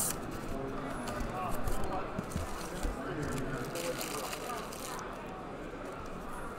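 Cardboard shipping case being opened by hand, its flaps rubbing and scraping, with one louder scrape about four seconds in, over a constant murmur of distant voices.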